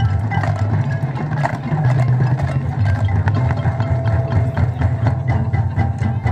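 A high school marching band playing: sustained low brass and wind chords under frequent percussion strikes, with front-ensemble mallet instruments, and a single note held for about a second in the middle.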